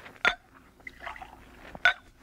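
Radio-drama sound effect of liquor being poured into a glass: a sharp clink of glass about a quarter second in, then a faint trickle through the middle.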